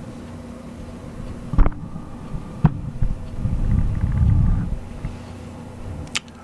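Handling noise at a fly-tying vise: two sharp clicks about a second apart, then a low rumble lasting about a second and a half, over a faint steady hum.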